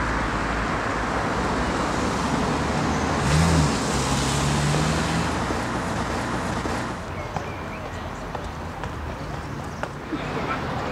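Road traffic: a steady rush of passing cars, with a louder vehicle engine note between about three and five seconds in. The traffic noise drops away noticeably about seven seconds in.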